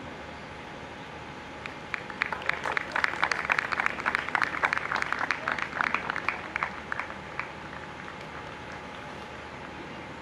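Applause from a small audience, a run of hand claps that starts about two seconds in, thickens, and dies away by about seven and a half seconds.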